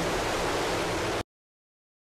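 Steady radio static hiss with a low hum under it, the background of a radio transmission, cutting off suddenly a little over a second in.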